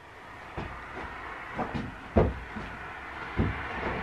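A series of scattered knocks and bumps, about half a dozen, with the loudest about two seconds in, over a faint steady background.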